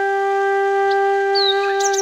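A flute holding one long steady note as intro music, with a few short high bird chirps near the end.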